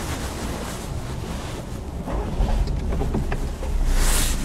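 Low rumbling noise on a phone's microphone as the phone is handled and moved about, with a few faint taps in the second half.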